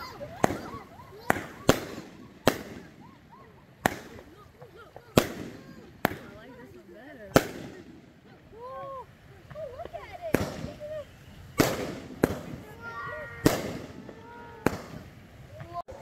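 Consumer fireworks going off overhead: about a dozen sharp bangs at irregular intervals, each a crack of a burst.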